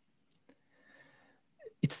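A pause in a man's speech: a soft mouth click and a faint breath, then he starts speaking again near the end.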